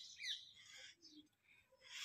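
A bird chirping quick, falling notes at the very start, then near silence with a few faint chirps.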